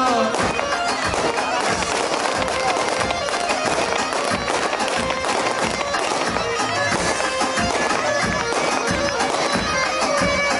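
Kurdish folk dance music played loud: a shrill reed wind instrument carries the tune over steady drum beats.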